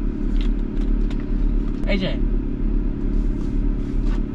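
Car engine idling, a steady low hum inside the cabin.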